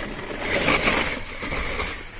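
Radio-controlled scale truck's electric motor and drivetrain whining steadily as it drives through snow, loudest in the middle.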